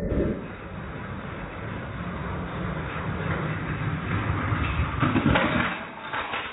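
Two die-cast toy monster trucks rolling fast down a plastic toy race track, a steady rumbling clatter that grows louder. Near the end it ends in a burst of loud clattering hits as they jump off and crash into a row of die-cast toy cars.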